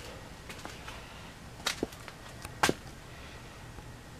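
A few sharp knocks over faint room hiss, the two loudest about a second apart near the middle, with lighter ticks around them.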